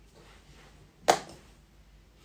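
A single sharp click about a second in, a hard object tapped or knocked against something, dying away quickly.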